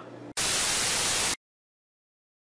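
A burst of static hiss, like a TV losing its signal, about a second long, starting suddenly a third of a second in and cutting off suddenly.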